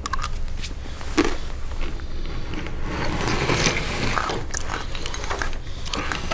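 Quick clicks, scrapes and crunching noises of small objects handled on a tabletop, busiest about three to four seconds in, over a steady low hum.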